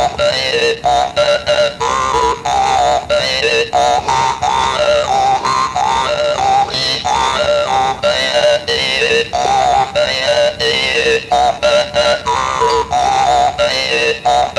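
Hmong jaw harp (ncas) played in short, speech-like phrases: a buzzing drone whose overtones rise and fall, with frequent brief breaks between phrases. This is the way the ncas 'speaks' Hmong words by following their tones.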